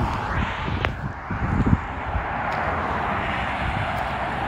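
Traffic passing on a dual carriageway: a steady rush of tyre and engine noise, with wind buffeting the microphone.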